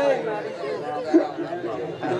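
A man talking into a microphone, with chatter from the people around him.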